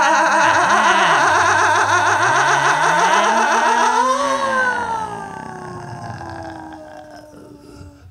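Wordless improvised vocals from several voices, a dense layer of fast warbling, rasping tones that sounds almost engine-like. About four seconds in, one voice rises and then slides down in a long falling glide that fades away.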